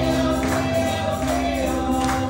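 Gospel music: voices singing over held chords and a moving bass line, with tambourine strikes on a steady beat.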